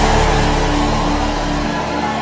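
Sustained background music under a prayer session: held notes over a dense wash of sound, gently falling in level, with the deep bass dropping out near the end.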